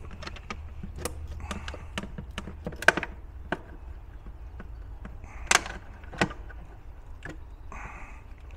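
Plastic battery-case lid clicking and cracking as it is worked loose by hand: scattered sharp clicks throughout, the loudest about three seconds in and about five and a half seconds in.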